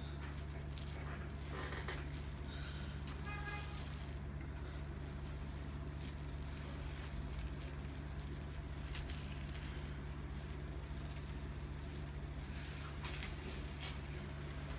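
Steady low hum under faint, soft handling sounds of gloved fingers laying banana slices onto chocolate-spread bread on a wooden board.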